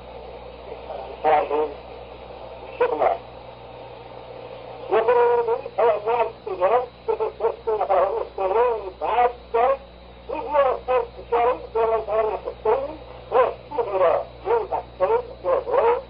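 A man talking in an old, low-fidelity 1964 tape recording: a few short phrases, then continuous talk from about five seconds in, muffled and thin, over a steady low hum.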